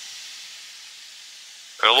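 Steady hiss of a jet fighter's cockpit over the aircrew intercom, with a man's voice starting near the end.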